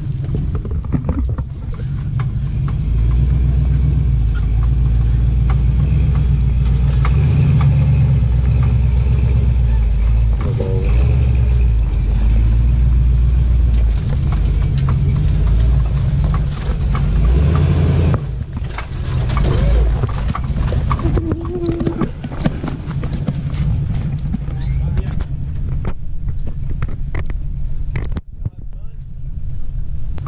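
Ford 460 big-block V8 of an old Ford 4x4 truck running at a slow crawl over rocks: a steady low engine rumble. It is loudest for most of the first half and eases off after about eighteen seconds.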